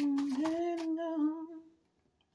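A woman humming one drawn-out note with her mouth closed. The pitch steps up slightly about half a second in, wavers a little, and fades out shortly before the end.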